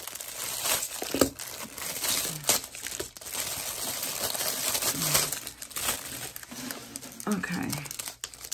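Thin clear plastic packaging crinkling and crackling continuously as hands work to get a product out of it.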